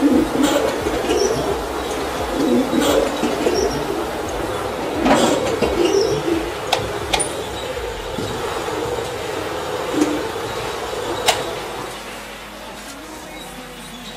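A rotating stainless-steel seasoning drum tumbling roasted corn puffs while they are coated with masala: a steady rustling hiss with a few sharp clicks, quieter over the last couple of seconds.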